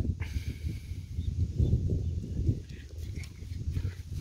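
Low, uneven rumble of wind buffeting and handling noise on a moving action camera's microphone.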